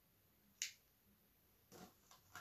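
Near silence broken by a single short, sharp click about half a second in, as plastic mascara tubes are handled and shifted in the hand.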